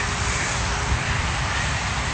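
Steady hiss of water spraying from a hose onto a paved walkway, with a low, uneven rumble underneath.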